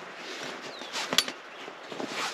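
Rope and tent canvas being handled overhead, a light rustling with one sharp click a little over a second in.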